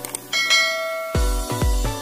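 A bright bell chime rings about a third of a second in and fades, then electronic dance music with a heavy bass kick drum about twice a second comes in just past a second.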